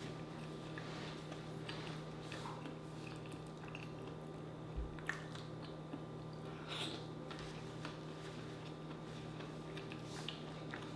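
A person chewing soft seafood with the mouth closed: quiet wet smacks and clicks, close to the microphone. A steady low electrical hum runs underneath, and there is a soft thump about five seconds in.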